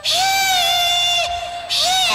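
A woman's voice holding one long, high sung note for over a second, then breaking into another high note near the end, sung in an exaggerated folk-song style that is mocked as sounding like a pig being slaughtered.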